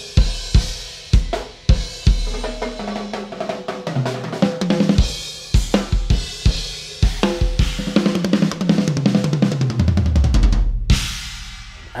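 Natal maple drum kit with Sabian cymbals played hard: a few separate heavy bass drum and cymbal hits, then a fast fill around the toms that steps down in pitch to the lowest drums near the end, with cymbals ringing over it.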